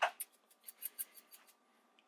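Salt being shaken out of a shaker into a glass blender jar: a quick run of faint, dry ticks that stops about a second and a half in.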